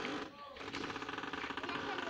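A rapid, even mechanical rattle that starts about half a second in and runs on steadily, with a brief voice just before it.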